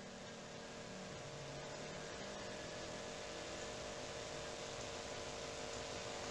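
Faint steady hiss with a low electrical hum: background noise of the recording microphone and room.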